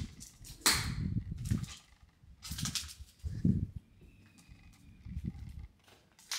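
Footsteps on a debris-strewn floor: half a dozen irregular thuds with some scraping, a second or so apart, with a quieter stretch near the end.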